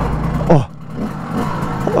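Simson two-stroke single-cylinder moped engine idling at a standstill. About half a second in, as first gear is engaged, its sound drops away sharply, close to stalling, then slowly picks up again.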